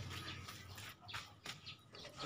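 Faint handling sounds as leaves are removed from a young niyog-niyogan (Ficus pseudopalma) stem, with a few soft clicks about a second in.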